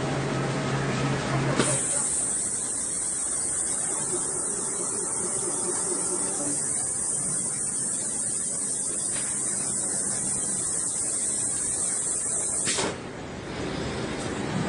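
Compressed-air vacuum generator on a PCB vacuum loader hissing steadily at a high pitch, drawing suction. It starts suddenly about a second and a half in and cuts off sharply near the end, over a low machine hum.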